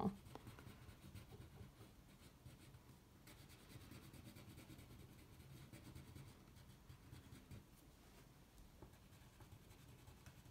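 Faint scratching of a wax crayon rubbed back and forth on paper, colouring in a small area, a little louder through the middle.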